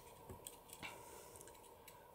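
Near silence with a few faint clicks of plastic as an N scale model caboose's body is snapped back onto its frame.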